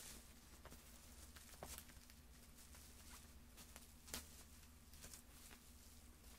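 Near silence with a few faint crinkles and taps of bubble wrap being handled, the clearest about a second and a half in and again about four seconds in, over a faint steady hum.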